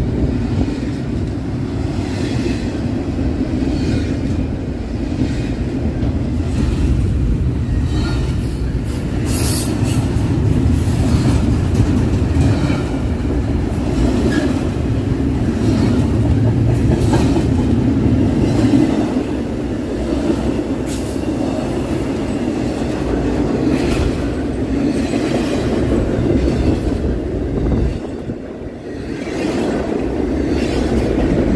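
A BNSF intermodal freight train's double-stack well cars rolling past close by: a loud, steady rumble of steel wheels on the rails with scattered clicks and clanks. The level dips briefly near the end.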